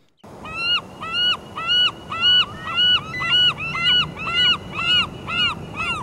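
Glaucous-winged gull calling: a run of about fourteen loud, evenly spaced calls, each note rising and then falling in pitch, at about two and a half a second.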